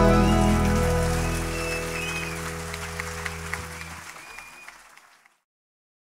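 A live band's final chord ringing out and dying away while the audience applauds, all fading out to silence about five seconds in.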